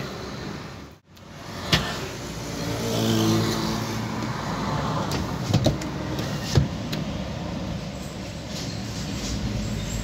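Car and traffic noise heard from inside a stationary car: a steady hum of road sound, swelling as a vehicle passes about three seconds in, with a few short sharp clicks and knocks a few seconds later.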